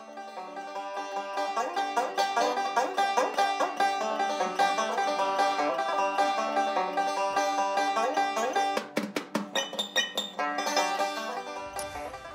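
A fast picked banjo tune, fading in over the first couple of seconds.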